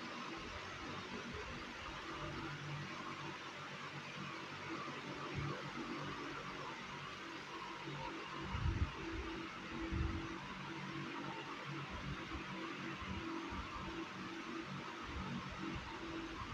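Steady hiss of room tone, with two soft low thumps about nine and ten seconds in.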